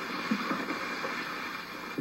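Steady rustling hiss of tall weeds and brush as they are pushed through.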